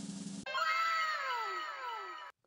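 A drum roll cuts off about half a second in. It is followed by a sound effect of several tones gliding downward in pitch together over about a second and a half, accompanying the slide transition.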